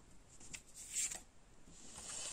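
Faint rustle of a playing card being drawn and handled over a cloth-covered table, with a soft brush about halfway through.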